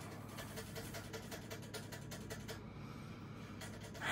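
A pet animal making faint, quick, rhythmic sounds, over a low steady hum.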